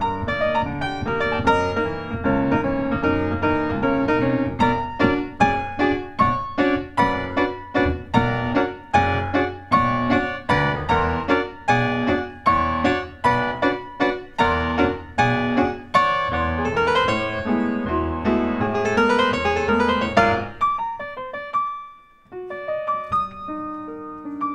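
Solo grand piano, tuned to A = 432 Hz, played with a steady pulse of struck chords over a low bass line. Rising runs follow, then a brief pause near the end before the playing goes on more softly.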